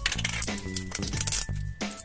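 Background music with a steady low tone, over a few sharp clicks and clinks of a hard plastic Pikmi Pops dome package being lifted off its stand and turned in the hands.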